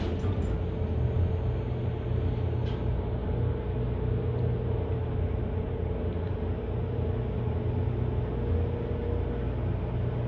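Dover elevator car running between floors: a steady low rumble and hum with a faint steady tone that dies away near the end.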